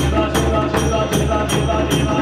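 Devotional kirtan music: hand drums keep a steady beat of about two and a half strokes a second, with a jingling, shaker-like percussion on each stroke, over a sustained low drone.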